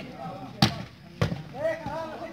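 A volleyball being struck twice, about half a second apart, during a rally, with men's voices shouting from the players and crowd in the second half.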